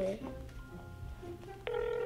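Telephone ringing tone: after a faint stretch, a steady electronic ring starts about three-quarters of the way in and holds, the sound of an outgoing call ringing on the other end.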